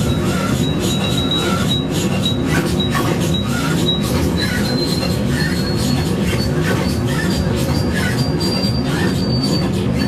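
Electronic music from a reacTable tabletop synthesizer: a dense low rumbling drone under a thin high whistle that steps gradually upward in pitch, with faint clicks about twice a second.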